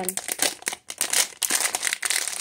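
Plastic blind-bag wrapper crinkling and crackling in irregular bursts as it is pulled open by hand.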